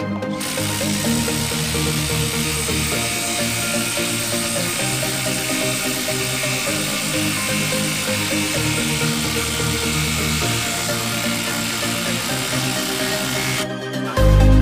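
A Milwaukee 12-volt impact driver running under load, hammering a long screw down into a wooden log, with electronic music playing over it. The driver's noise starts about half a second in and cuts off just before the end.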